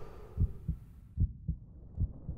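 Heartbeat sound effect: two low double thumps (lub-dub), a little under a second apart, over a faint low hum.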